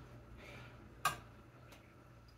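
A metal spoon tapping once against a nonstick skillet: a single sharp click about a second in.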